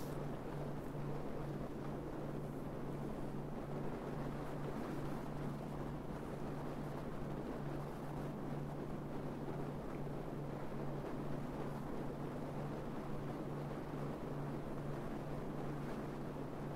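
Steady wind noise buffeting a roof-mounted camera microphone on a moving car, mixed with road noise and a steady low hum.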